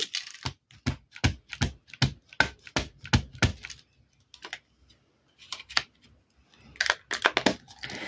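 Solvent ink pad (StazOn) dabbed repeatedly onto a stamp to re-ink it: quick light plastic taps, about three to four a second for the first few seconds, then a short run of further taps and handling clicks near the end.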